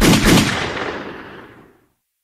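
Gunshot sound effect: one sudden loud blast whose echo fades away over nearly two seconds.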